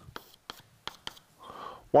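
Chalk writing on a blackboard: a few sharp taps and a short, soft scratch as a letter is drawn.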